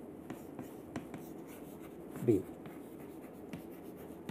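Chalk writing on a chalkboard: faint scratching with small taps as the letters are drawn.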